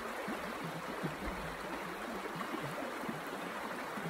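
A creek running high: a steady, even sound of flowing water.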